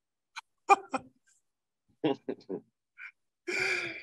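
Men laughing in short bursts after a swig from a gas can, with sharp gasps early on and a breathy exhale near the end.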